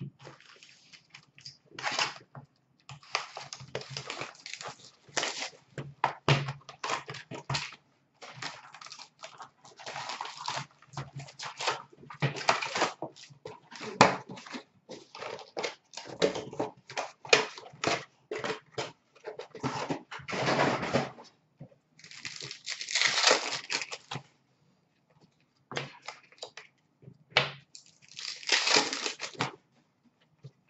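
Hockey card packs being torn open and their wrappers crinkled, with cards shuffled and packs handled: a busy run of short rustles and clicks, with longer crinkling stretches near the end.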